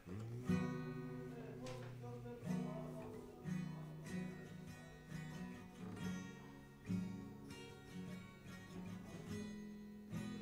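Acoustic guitar strummed slowly, a chord struck about once a second and left to ring into the next.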